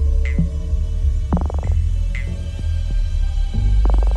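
Electronic music playing from a vinyl record on a turntable: a deep, throbbing bass under a held mid-pitched tone, with short high blips. Dense bursts of sound come about a second and a half in and again near the end.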